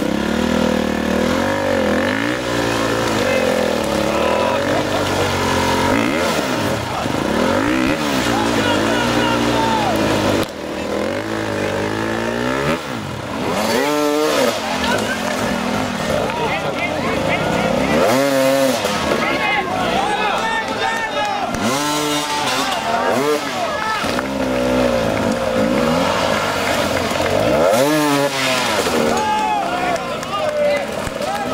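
Several hard enduro dirt bike engines revving in repeated rising and falling bursts as riders fight their bikes up a steep muddy climb, with spectators shouting and talking over them.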